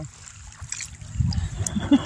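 Water trickling and splashing over river stones just after being splashed onto a rock stack, with a low rumble about a second in and a woman's short laugh near the end.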